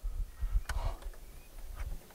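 Lid of an Iceco VL75 Pro dual-zone 12 V fridge being unlatched and lifted open: one sharp click about two-thirds of a second in, then a few faint knocks, over a low rumble.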